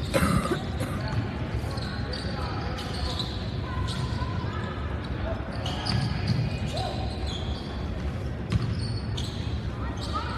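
Basketball bouncing on the hardwood court of a gymnasium during live play, over spectators talking and calling out in the echoing hall.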